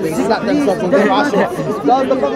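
Speech only: men's voices talking over one another, with crowd chatter around them.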